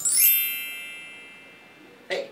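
Chime sound effect: a quick run of bright, bell-like chime notes that rings out and fades away over about a second and a half, used as a dream-sequence transition.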